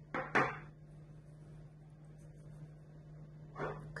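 Two quick knocks about a third of a second apart, as a small ceramic bowl is set down on a wooden tabletop, then faint room tone. A brief soft rustle comes near the end.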